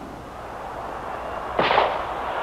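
A starter's pistol fires about a second and a half in, a sudden crack with a short trailing smear, sending off a sprint race. Before and after it there is a steady crowd noise from the stands.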